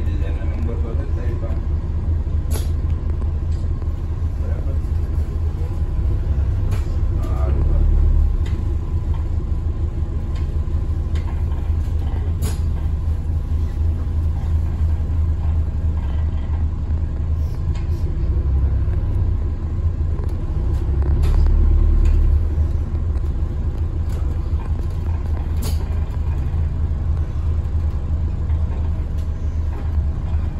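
Inside an Alexander Dennis Enviro 400MMC double-decker bus on the move: a steady low rumble of engine and road noise that swells briefly twice. A few sharp clicks or rattles from the bus's fittings stand out over it.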